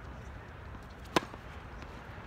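A tennis racket striking the ball on a forehand: one sharp, loud pock about a second in.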